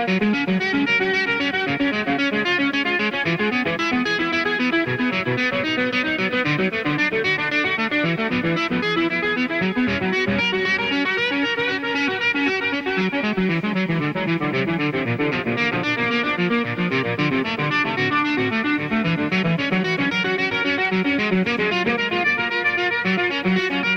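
Solo electric guitar played live: a continuous, dense stream of fast notes ringing over one another.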